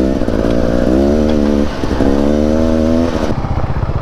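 Dirt bike engine under way, its pitch climbing twice with a short dip between, as on an upshift. After about three seconds it falls to a lower, rougher running.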